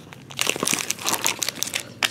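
Foil wrappers of sealed Pokémon booster packs crinkling as a handful of packs is handled and set down, a run of irregular crackles.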